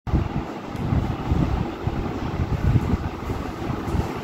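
Low, uneven rumbling background noise with no clear pitch or distinct knocks, swelling and easing from moment to moment.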